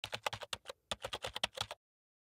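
Computer keyboard typing: a quick run of about fifteen key clicks with a brief pause partway through, stopping shortly before the end. It is typing out a web address.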